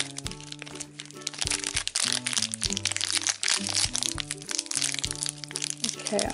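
Crinkling and crackling of small clear plastic toy packets being handled and torn open, thickest through the middle, over steady background music.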